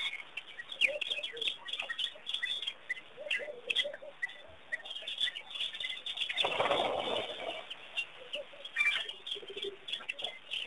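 Wild birds chirping and calling in many short notes, with some lower calls among them. About six and a half seconds in, a rough, noisy sound lasts about a second.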